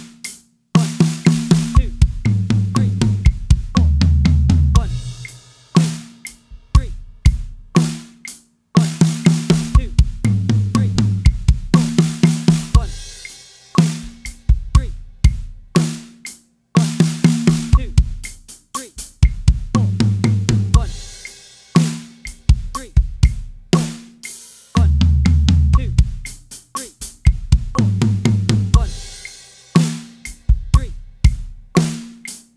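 Acoustic drum kit playing a linear 6-6-4 fill combination at 60 BPM, alternating with a bar of eighth-note groove. In each fill the hand strokes go in groups of four on one drum or cymbal, stepping down the toms from high to low. The pattern repeats about every eight seconds, with cymbal crashes and bass drum.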